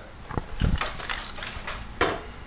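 A few light knocks and clicks of handling, bunched about half a second in, followed by faint ticks.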